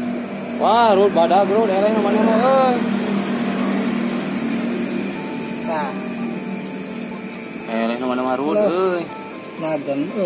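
A person's voice in long, drawn-out sounds that rise and fall, three times, over a steady low hum.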